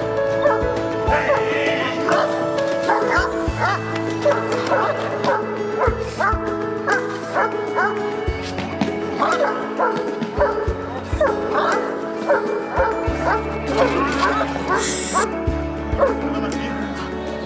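A Caucasian ovcharka (Caucasian shepherd dog) barking aggressively in a rapid run of barks, about two or three a second, starting a few seconds in. The dog is being tested for guarding aggression in protection work. Background music plays throughout.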